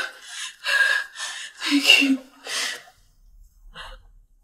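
A woman's short, breathy gasps, about six in quick succession, some with a little voice in them, then quiet about three seconds in.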